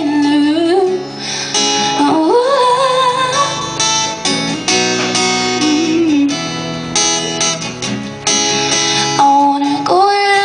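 Steel-string acoustic guitar strummed in a steady rhythm, with a woman singing short phrases over it.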